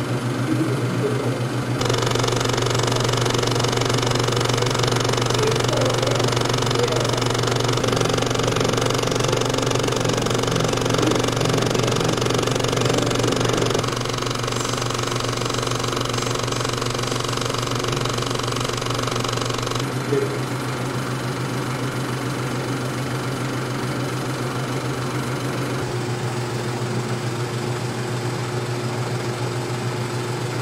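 Century 35mm film projector running in a carbon-arc projection booth: a steady mechanical running sound with a strong low hum. It changes character abruptly a few times as different parts of the machine come close.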